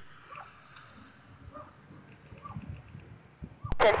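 Faint steady hiss of an air traffic control radio feed in the gap between transmissions, with a few soft short chirps. A sharp click sounds near the end as the next transmission keys on, and a voice follows.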